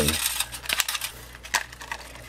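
Small plastic clicks and rattles from handling an RC car's hand-held remote while its 9-volt battery is pulled from the battery compartment, with a sharp click about a second and a half in.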